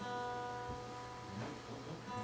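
Acoustic guitar struck once and left to ring quietly, the note fading slowly, with a few faint knocks of the instrument being handled.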